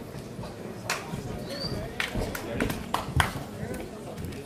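Indistinct voices of a fight crowd and corners, broken by several sharp thuds and slaps from two MMA fighters striking and scrambling in the cage, the loudest a little after three seconds in. A short high whistle sounds about one and a half seconds in.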